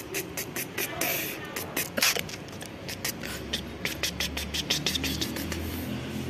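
A hand scratching and rubbing a sleeping cat's fur, heard as a run of irregular scratchy clicks and rustles. About halfway through, a low steady hum comes in underneath.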